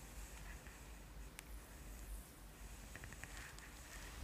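Faint rustle of hands gliding over skin during a slow neck and chest massage stroke, with one small click about a second and a half in.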